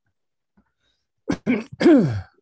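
A man clearing his throat near the end: three short rough bursts close together, the last sliding down in pitch, after a near-silent second.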